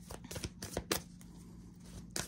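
Oracle cards being handled and slid over one another: a handful of soft clicks and rustles of card stock, mostly in the first second.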